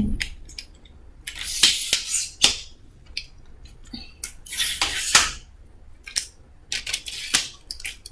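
Aluminium tripod legs being worked by hand: three scraping slides of the telescoping leg sections, each a second or less, with a few sharp clicks of the leg locks between them.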